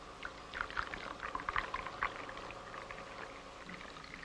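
Coffee poured from a pot into a china cup: a run of quick liquid splashes and trickling for about two seconds, thinning out after that.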